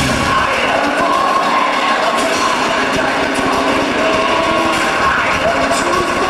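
Loud band music with heavy bass cuts off at the start, leaving a concert crowd in a large hall cheering and yelling, with high whoops and held tones over the crowd noise.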